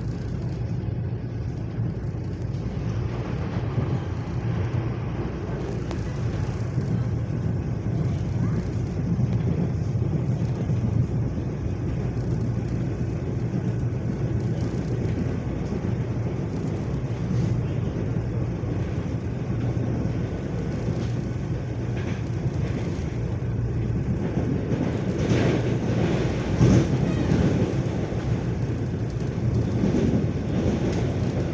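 Electric commuter train running at speed, heard from inside the carriage: a steady low rumble of wheels on rail, with a few sharper clatters near the end.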